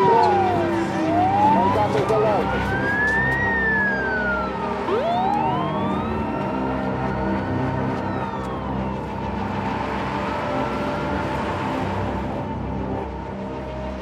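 Air raid sirens wailing, each slowly rising and falling in pitch over a few seconds, with two or more overlapping out of step.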